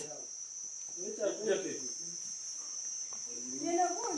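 Insects trilling a steady high note, with faint voices of people talking about a second in and again near the end.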